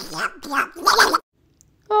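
A Donald Duck–style squawky, garbled cartoon duck voice talking, stopping a little over a second in.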